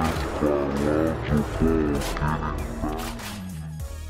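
Background music with a steady bass line, with voices over it.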